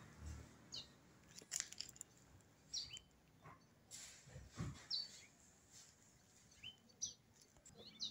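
Faint bird chirps: a handful of short, high calls spaced a second or two apart, with a few soft clicks in between.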